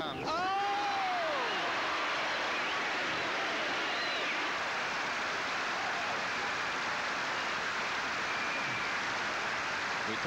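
Noise of a large stadium tennis crowd: a steady wash of many voices and hand noise from the stands, with a few voices calling out over it in the first second or so.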